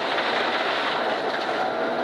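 Ford Escort Mk1 rally car's engine pulling hard at steady revs, with the rush of gravel under the car, heard from inside the cabin.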